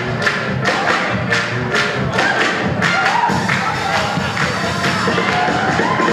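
Upbeat stage-musical number: singing over a band with a fast, steady beat.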